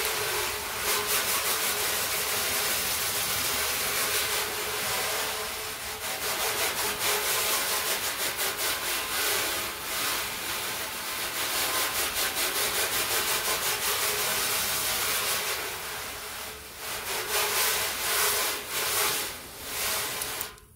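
Water spraying from a garden-hose spray nozzle onto a painted car fender, a steady hiss of spray splashing on the panel as the clay-bar lubricant is rinsed off. The hiss wavers and dips a few times near the end.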